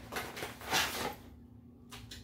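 A white cardboard model box being opened by hand: two short rustles of cardboard and packaging sliding against each other in the first second.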